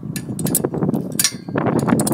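Metal clinks and taps of a wrench working the nut on a concrete anchor bolt against a steel bracket plate, over rough handling noise that grows louder about one and a half seconds in.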